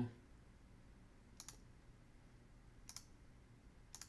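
Faint computer mouse clicks, about one every one and a half seconds, over near silence.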